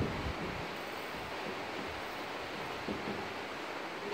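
Steady background hiss, with a few faint soft taps of a marker writing on a whiteboard.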